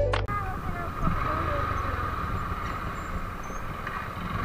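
Background music cuts off abruptly just after the start, followed by a motorcycle running slowly at low revs, a steady low rumble with a hiss over it, and faint voices in the background.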